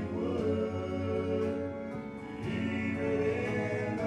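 Male gospel quartet singing in harmony into handheld microphones, sustaining notes with several voices together.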